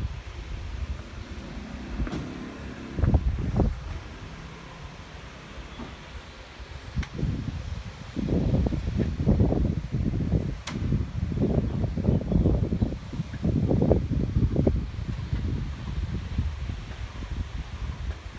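Wind buffeting the phone's microphone in irregular low rumbling gusts, heavier and more continuous from about eight seconds in, with a few sharp clicks.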